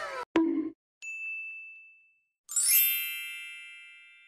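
A sharp click, then a single high ringing tone lasting about a second, then a bright metallic ding that starts about two and a half seconds in and rings out slowly.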